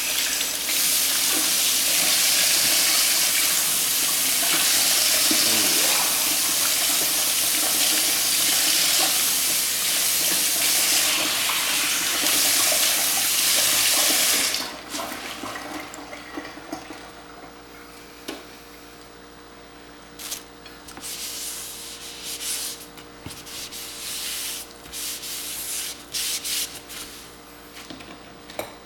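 A kitchen tap running into a sink, steady for about the first half and then shut off; after that, a few short bursts of water.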